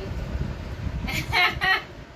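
A rooster crowing once, a short high-pitched call in a few quick parts about a second in.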